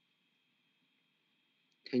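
Near silence with faint room tone, then a man's voice begins speaking near the end.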